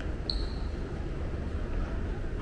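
Steady low rumble of a large tiled indoor hall, with one short, high squeak about a quarter of a second in.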